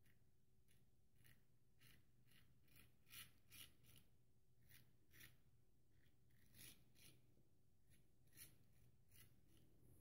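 Faint, short rasping scrapes of a full-hollow-ground straight razor cutting stubble through shaving lather on the jaw and neck, about two quick strokes a second, stopping just before the end. This is the first pass, shaving with the grain.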